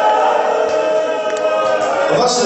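Many men's voices raised together in a held, sung lament, several pitches overlapping without a break.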